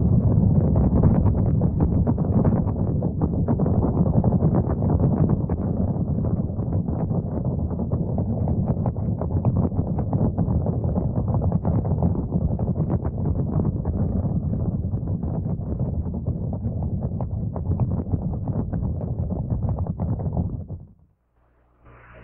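Saturn IB rocket's first-stage engines at liftoff: a loud, deep, crackling rumble that holds steady and cuts off suddenly about a second before the end.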